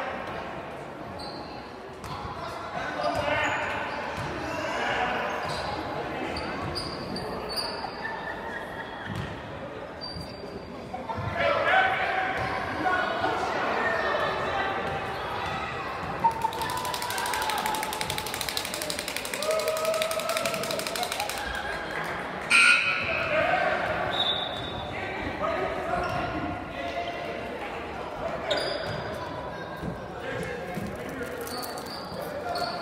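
A basketball bouncing on a hardwood gym court, with indistinct voices of players and spectators echoing in the large gym. About halfway through there is a stretch of louder noise, and a sharp bang comes a little after.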